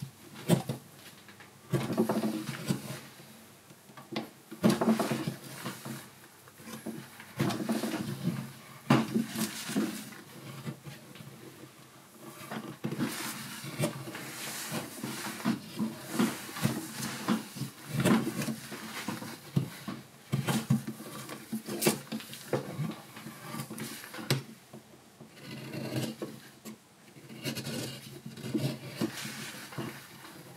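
Long-handled gouge hollowing the bowl of a wooden spoon: repeated short scraping cuts into the wood, in bursts of a second or two with short pauses between.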